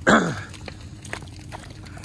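A person clears their throat once, a short rough sound with a falling pitch, at the very start. A few faint scattered ticks follow, in keeping with footsteps over debris-strewn ground.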